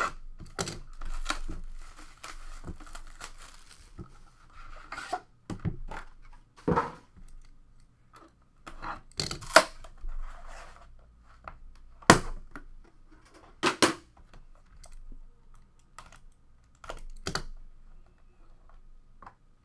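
Plastic shrink wrap being torn and crinkled off a cardboard trading-card hobby box, then a series of sharp knocks and taps as the box is opened and its contents handled.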